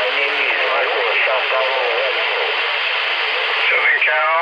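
CB radio on 27.365 MHz (channel 36) receiving: a faint, garbled voice from a distant station buried in a steady hiss of static from the speaker.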